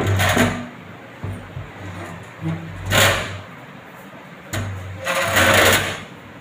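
A laminated cabinet drawer or shutter sliding on metal channel runners, rasping three times: briefly at the start, again about three seconds in, and longest near the end.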